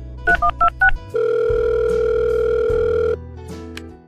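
Phone sound effect: four quick keypad beeps in the first second, then a steady phone tone lasting about two seconds, like a line ringing. Quiet background music continues underneath.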